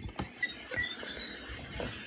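Faint background noise from a live-stream guest's open microphone, with a few soft, irregular knocks.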